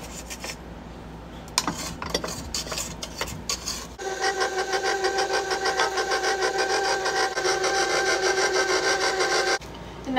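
A wooden spatula scraping batter down the sides of a stainless steel mixing bowl in irregular strokes, then a KitchenAid stand mixer's motor running with a steady whine and a fast pulse as its flat beater mixes thin chocolate cake batter. The mixer cuts off suddenly shortly before the end.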